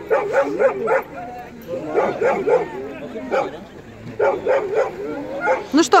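A small dog yapping and whining in several short bouts.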